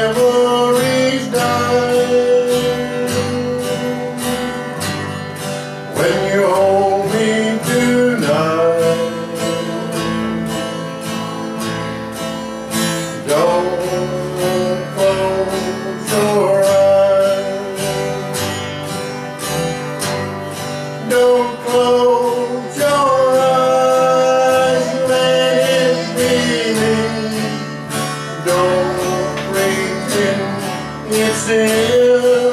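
Country music: an acoustic guitar strumming a steady rhythm, under a melody line that slides up between held notes.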